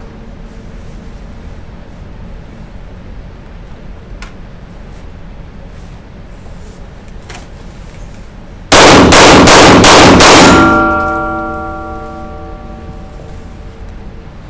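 A rapid string of about six handgun shots in under two seconds, very loud, fired by shooters lying on their backs, followed by a ringing tone that fades over about two seconds.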